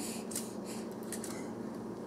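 Hand-crank metal sifter being cranked to sift powdered sugar, giving a faint, irregular series of scratchy rasping strokes.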